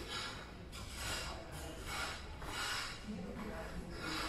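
A person breathing heavily close to the microphone, with a short hissy breath every half second to second.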